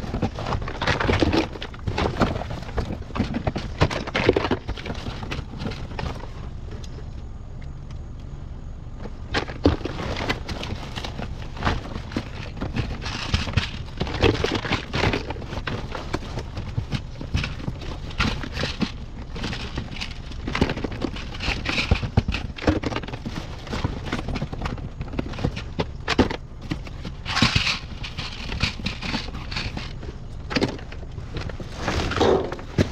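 Items being rummaged through in a dumpster: cardboard boxes and loose objects shifted and knocked about, giving irregular knocks, clatters and cardboard rustling, over a steady low hum.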